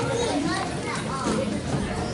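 Indistinct children's voices chattering, with a high voice rising near the start.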